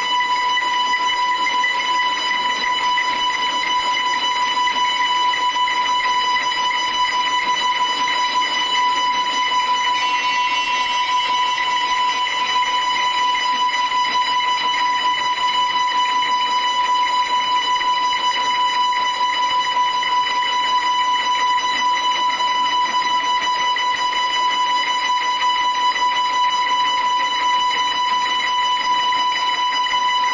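Five electric guitars holding one steady high drone tone, with evenly stacked overtones ringing above it. About ten seconds in, the highest overtones shift and shimmer, while the main tone holds unchanged.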